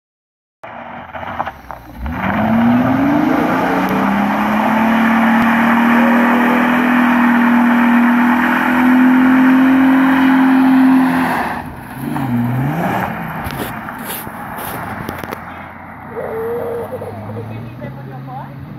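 1995 Holden VS Commodore V6 doing a burnout. The revs climb about two seconds in and hold high and steady for roughly nine seconds, with a hiss of spinning rear tyres under the engine. Then the revs drop, swing down and up once, and the car drives off and fades.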